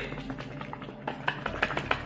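Contents knocking about inside a heart-shaped box sealed with duct tape as it is shaken, a quick irregular run of taps and thuds that sounds like something big inside.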